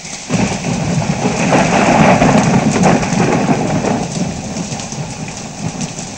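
Heavy rain pouring down. It comes in suddenly, is heaviest about two seconds in and eases slightly near the end.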